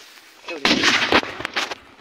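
Gunfire: a loud, dense burst starting about half a second in and lasting about half a second, followed by two shorter, sharper cracks.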